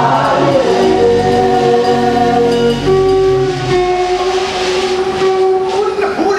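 Gospel worship singing: a man's amplified voice sings long held notes, with a choir singing along.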